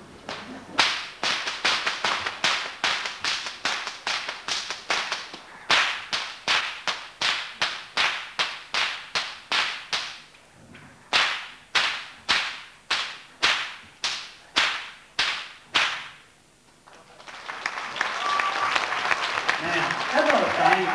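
A whip cracked over and over in quick succession, about two sharp cracks a second, with a brief pause about ten seconds in before a second run of cracks. Audience applause follows from about seventeen seconds.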